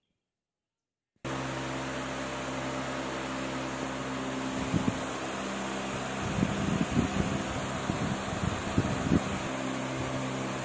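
After a second of silence, a steady mechanical hum like a running fan sets in, with a low drone under it. Over it, from the middle on, come irregular rustles and thuds of the plastic-wrapped manual and the cardboard box being handled.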